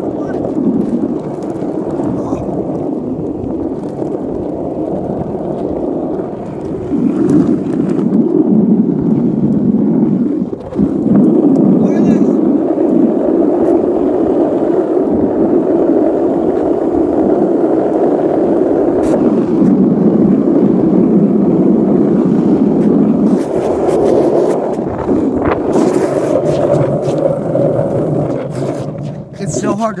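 Skateboard wheels rolling fast on asphalt as the board is ridden lying down (a 'coffin') down a steep hill: a loud, continuous rumble with wind on the microphone. It gets louder about seven seconds in and again about eleven seconds in as speed builds, and eases a little near the end.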